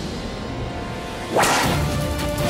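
A single whip lash, a sharp swish about one and a half seconds in, over dramatic background music.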